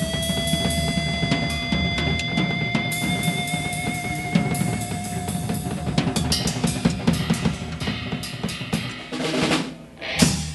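Live rock band with electric guitars and a drum kit playing loudly. A guitar holds one long, slightly wavering note over busy drumming, and that note fades out about six seconds in. Near the end the drums build up in a roll, closing the song.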